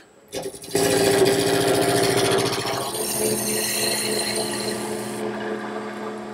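Wood lathe turning a square leg blank while a gouge knocks off its corners to rough it round: a dense chattering scrape of the tool cutting the wood over the lathe's steady hum. It starts about a second in and eases off near the end.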